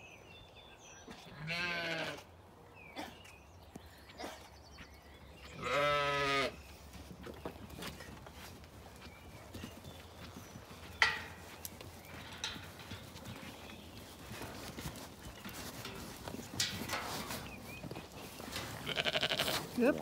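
Zwartbles sheep bleating: two long, quavering bleats, the first about a second and a half in and the second about six seconds in. A single sharp knock sounds about eleven seconds in.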